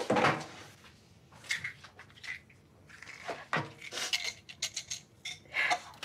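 Kitchen things handled on a counter by the sink: a loud knock right at the start, then a run of lighter clinks and knocks of dishes and utensils.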